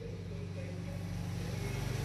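A steady low mechanical hum of a machine running in the background, growing slightly louder.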